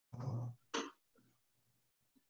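A person clearing their throat: two short rasps in the first second, then quiet.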